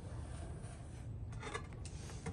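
Faint scratchy rubbing of a metal wallpaper trim guide and knife blade against the paper while trimming, with a few light clicks about one and a half seconds in.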